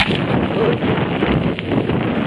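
Steady wind buffeting the microphone of a camera carried on a moving bicycle, a loud rushing noise.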